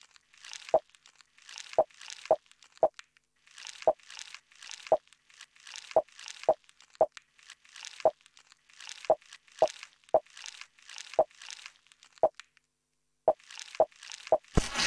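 Algorithmically generated TidalCycles pattern played through SuperCollider: sparse, uneven percussive sample hits from the "digitakt" and "organic" banks, the latter in a 5-in-7 Euclidean rhythm. Each hit is a short click with a brief ping and a hissy tail, mostly about half a second apart in small clusters. The hits pause briefly in the second half, then return as a quicker run near the end.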